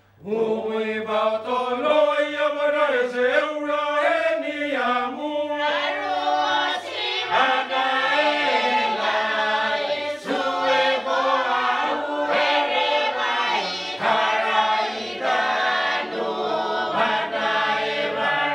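Motu peroveta (prophet song) choir of men and women singing together in harmony, with many voices moving between held notes.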